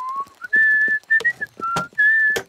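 A man whistling a simple tune of a few held notes, with two or three sharp knocks of a hammer on the wooden boat hull as he sets about mending it.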